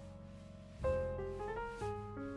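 Background piano music: a held note fades away, then a new phrase of notes starts just under a second in.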